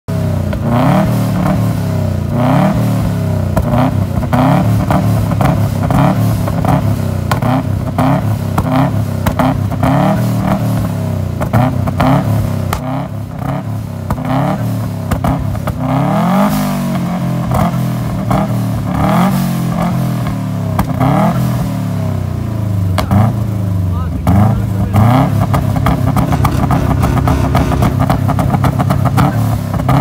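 Subaru Impreza WRX STI's turbocharged EJ25 flat-four revved through a loud open exhaust in repeated quick blips, each pitch rising and falling, with sharp pops between them. About twenty-five seconds in it is held at a steady higher engine speed.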